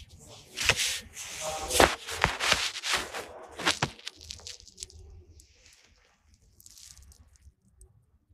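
Phone-microphone handling noise: the phone rubbing and scraping against a wool coat as it is moved, with sharp knocks, for about four seconds, then only faint rustles.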